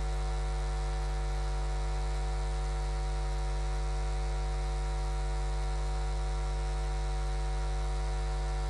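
Steady electrical mains hum with a stack of overtones, an unchanging buzz on the broadcast audio feed with no speech over it.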